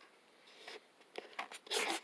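Rustling handling noise of a hand-held camera being moved and gripped, starting about a second in and growing louder near the end, after a nearly quiet start.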